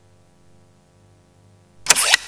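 A faint, steady low drone of background music, then near the end a sharp whoosh-and-hit transition sound effect, two quick hits with a short fading tail.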